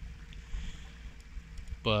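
A 45 lb Minn Kota electric trolling motor, run on 18 volts, pushes the boat along with a faint steady whine. Underneath it is a low, even rumble of wind and water.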